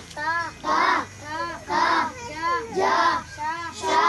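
Children's voices chanting a lesson in a rhythmic sing-song, with short rising-and-falling syllables repeating about twice a second.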